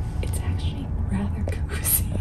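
A person whispering softly in short breathy bits over a low steady rumble.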